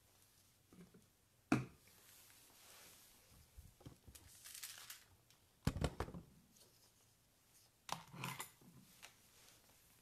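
Quiet handling noise as a phone camera is picked up and repositioned: a sharp knock about a second and a half in, a heavier thud around six seconds and another knock near eight seconds, with brief rustles of cloth between them.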